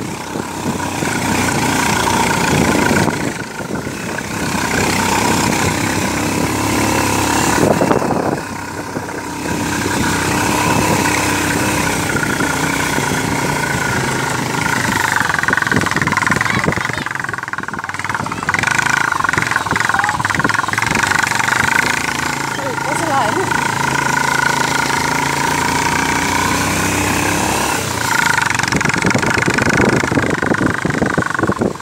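Motorcycle engine running as the bike rides over a rough dirt track, its pitch drifting up and down with the throttle, over loud rumbling noise from wind and the bumpy road. The sound dips briefly twice in the first ten seconds.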